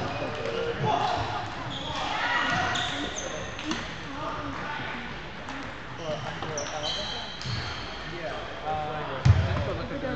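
Table tennis balls knocking on tables and paddles across a large gym hall, mixed with brief high squeaks and voices in the background. A heavier thud stands out about nine seconds in.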